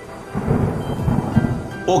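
Thunder rumbling, swelling about half a second in, over a hiss of rain and soft background music.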